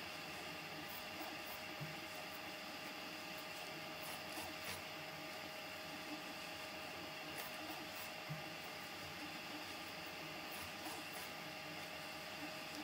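Prusa MK4 3D printer converted to a pellet extruder, running mid-print: a faint, steady hum with several held tones and a few light ticks scattered through.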